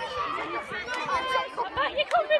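A group of children's voices chattering and calling out at once, several overlapping voices.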